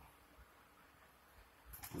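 Near silence: room tone, in a pause between remarks.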